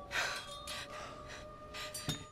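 Several pained, gasping breaths from a wounded man who has just been stabbed in the shoulder, over soft held notes of film score.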